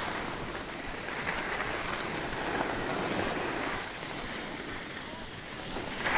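Skis sliding and scraping over packed, groomed snow on a downhill run, a hiss that swells and eases with the turns, with wind on the microphone.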